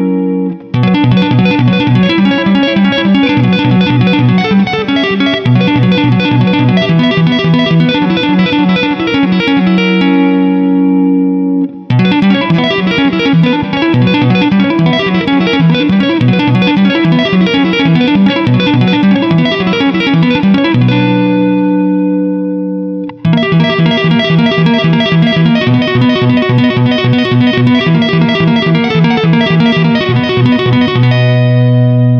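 Electric guitar played with two-handed tapping: both hands tap chord notes on the fretboard, piano-style, in a fast, even, repeating pattern, with heavy reverb on the sound. The run breaks off briefly about 12 s in, and around 21 s a low chord rings for a couple of seconds before the tapping starts again.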